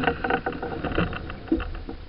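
Irregular clicks and knocks of deck gear and rigging being handled on a sailing yacht's foredeck, over a low rumble from the boat moving through the water.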